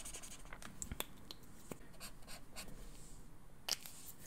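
Felt brush-tip marker rubbing and scratching softly across sketchbook paper as a swatch is coloured in, with a few light ticks. A sharper click near the end.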